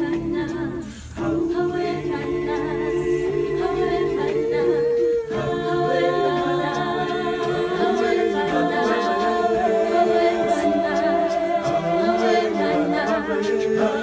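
An a cappella vocal group singing in harmony, several voices holding long notes together, with a short break about a second in.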